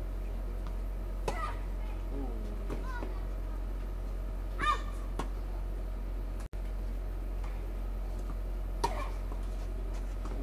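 Outdoor ambience with a steady low hum, a couple of sharp knocks and one short, high-pitched call about halfway through.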